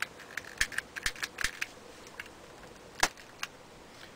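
Sharp clicks and snaps as an oxyhydrogen (HHO) gas burner is being lit. A quick run of about eight comes in the first second and a half, then a few single ones, the loudest about three seconds in.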